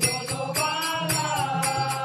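A group of men singing a Hindu devotional aarti in drawn-out notes, kept in time by a steady beat of clapping and jingling at about four strokes a second.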